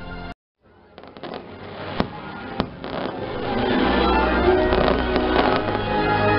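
Fireworks bursting and crackling overhead after a split-second dropout to silence, with two sharp bangs about two and two and a half seconds in. Show music comes back in and grows louder over the second half.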